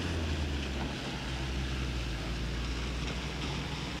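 A steady low engine rumble with a hiss over it, even in level throughout.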